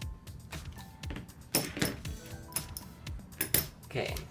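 Background music under a few sharp knocks and clatters of tool handling on a cutting mat, the loudest about a second and a half in and again near the end, as a rotary cutter is set down and a paper pattern piece and lycra fabric are handled.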